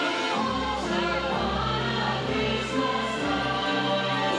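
Christmas parade music with a choir singing over instrumental backing; a deep bass line comes in about half a second in.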